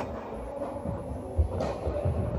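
Tennis rally in a large indoor hall: a sharp click at the start and a racket striking a tennis ball about one and a half seconds in. Low thudding and rumble from footsteps and the hall run underneath.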